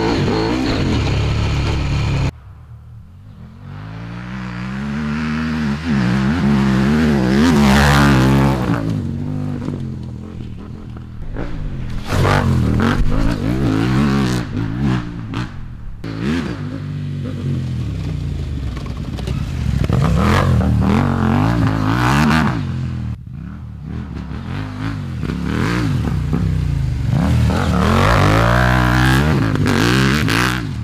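2019 KTM 790 Adventure S's 799 cc parallel-twin through a full titanium SC-Project exhaust, revving hard and changing gear off-road, its pitch rising and falling over and over. It swells and fades several times as the bike comes near and moves away, with a sudden drop about two seconds in.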